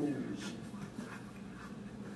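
Indistinct voices in a small room, loudest at the start with a falling vocal sound, over a steady low hum.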